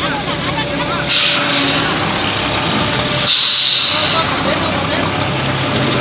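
A heavy truck's diesel engine running as it drives slowly past, with short bursts of air-brake hiss. The longest and loudest hiss comes about three seconds in.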